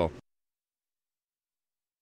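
The last syllable of a man's speech, then dead silence: all sound cuts off abruptly just after the start, with no crowd or rink noise at all.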